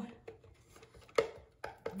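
A few light wooden clicks and knocks, the loudest about a second in, as the thin laser-cut wooden handle and its round end caps are handled and shift against the crate's sides.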